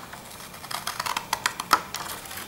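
Paper card being cut, heard as an irregular run of short, crisp clicks and crackles, the loudest near the end.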